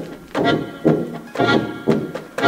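Live improvised music from an accordion, tuba and amplified noise-performer trio: a steady pulse of sharp, ringing hits about twice a second, each carrying pitched tones.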